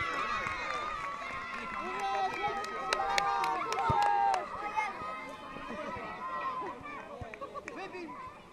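Overlapping shouts and calls of young children playing football on an open pitch, mixed with spectators' voices; the calling is loudest and busiest about three to four seconds in.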